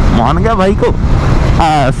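Motorcycle running on the move, with its steady engine hum and road and wind noise under a man's voice speaking over it.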